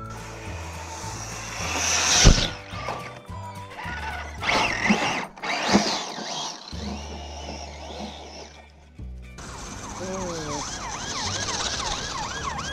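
Background music with a stepping bass line and loud sound-effect hits, the biggest bang about two seconds in. The music stops suddenly about nine seconds in, and a police siren takes over, yelping in quick rising-and-falling sweeps.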